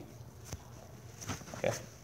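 A quiet pause broken by a single sharp click about half a second in, then a short grunt-like murmur of 'okay' from a man's voice near the end.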